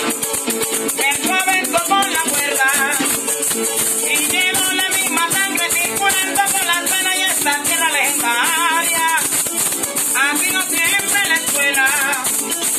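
Venezuelan joropo llanero music: maracas shaking in a fast, steady rhythm over plucked strings, with a melody line that bends in pitch.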